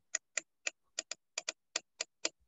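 A run of crisp computer clicks, evenly spaced at about four a second, from a mouse or keyboard at the desk.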